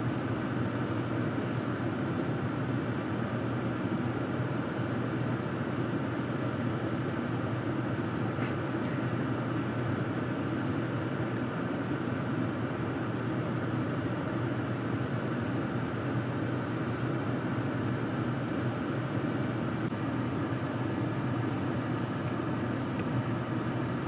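Steady, even hum inside a running 2020 Toyota's cabin: the vehicle running with the ventilation fan going. There is one faint tick about eight seconds in.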